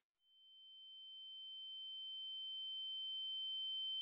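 A single steady high-pitched electronic tone, with a fainter lower tone beneath it. It fades in under a second in and slowly grows louder. It works as a cartoon shock sound effect, like a ringing in the ears.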